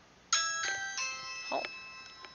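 Electronic chime of three quick bell-like notes, about a third of a second apart, ringing on after the last one: a smart-home alert for motion at the front door. A short spoken "Oh" comes near the end.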